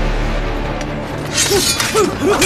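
Tense film score playing, broken about one and a half seconds in by a sudden sharp crash, a shattering or clashing sound effect as a fight breaks out.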